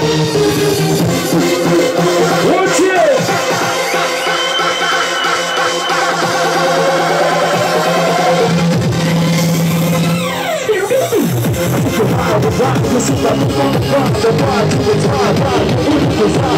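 Loud electronic dance music from a club DJ set. The kick and bass drop out for a breakdown of held synth tones, then a long falling sweep about ten seconds in leads into the beat kicking back in with full bass.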